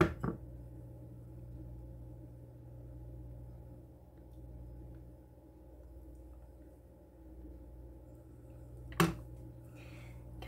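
Low, steady room hum with faint handling of soap embeds in a silicone mold, and one short sharp sound about nine seconds in.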